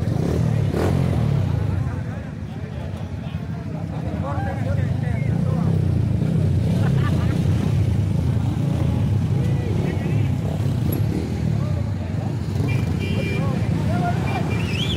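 Motorcycle engines running at idle in a crowd of bikers, a continuous low rumble, with people chattering over it.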